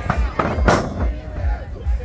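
Sharp impacts from a pro wrestling bout, a quick few of them with the loudest under a second in, heard over shouting voices and a low rumble of wind on the microphone.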